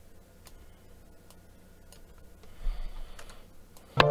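Scattered sharp clicks of a computer mouse and keyboard as MIDI notes are edited, with a low thump about two and a half seconds in.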